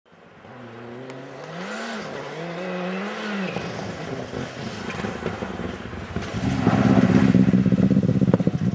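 Rally car engine on a snow stage, faint at first and growing steadily louder as the car approaches. Its pitch rises and falls with the throttle early on, and it becomes loud and close over the last second and a half.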